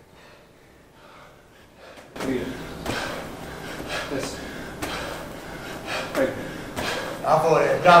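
A 14-lb medicine ball thudding against a wall target during wall-ball shots, roughly once a second from about two seconds in, with the athlete gasping hard between throws.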